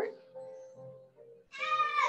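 A short, loud, high-pitched vocal cry about one and a half seconds in, rising and then falling in pitch.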